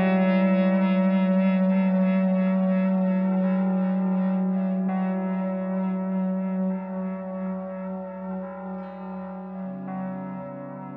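Les Paul-style electric guitar played through effects with echo: a chord struck at the very start rings on, wavering slightly and slowly fading, and a new chord comes in near the end.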